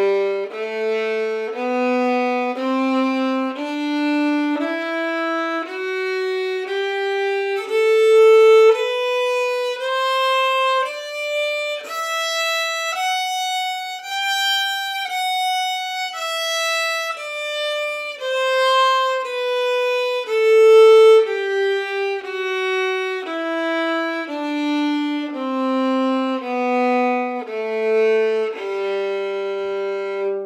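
Solo violin playing a G major scale over two octaves with smooth separate bows, one bow per note at about a note a second. It climbs step by step from the low G to the top G, holds it briefly at the midpoint, then steps back down to the low G.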